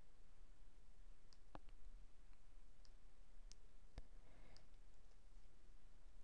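Faint, scattered clicks of a computer mouse or trackpad button, about seven spread over a few seconds, as a date is picked from a dropdown menu, over a low room hum.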